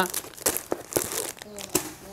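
Clear plastic sarong packaging crinkling in several short bursts as it is lifted out of a cardboard box and handled.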